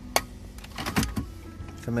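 A sharp plastic click a moment in, then a few softer knocks: the centre-console cup-holder tray of a Nissan Elgrand being pushed shut and the storage drawer below pulled open.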